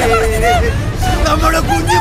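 Raised voices of actors calling out in Malayalam, over a steady low rumble.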